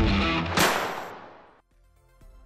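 Intro music with electric guitar, closing on a sharp hit about half a second in that rings and fades out to near silence.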